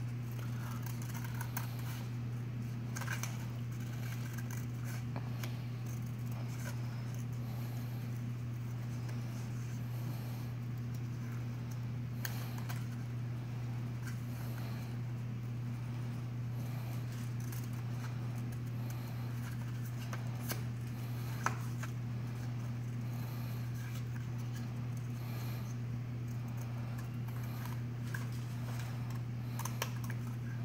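Scissors snipping through paper in scattered short cuts, faint beneath a steady low hum.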